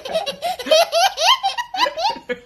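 A toddler laughing hard: a run of short, high-pitched peals, many rising in pitch.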